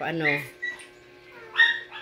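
A dog giving short, high-pitched whimpers: a faint one about half a second in and a louder one near the end.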